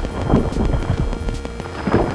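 Dramatic score music with a heavy, galloping percussion beat and low thuds, with a falling sweep twice.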